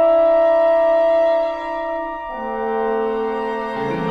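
Contemporary classical chamber music: a loud sustained chord that falls away after about a second and a half, then a new, lower held chord about two seconds in, with another attack just before the end.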